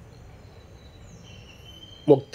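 Low steady background hum and hiss with a faint, thin, high-pitched tone that comes in about halfway through and holds.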